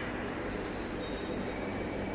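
Z-lock sandwich panel forming line running: a steady, even machinery noise with no separate knocks or strokes.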